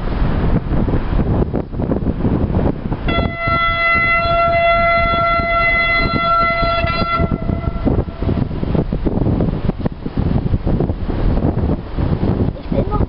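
Locomotive horn sounding one long steady note of about four seconds, starting about three seconds in. Heavy wind noise on the microphone throughout.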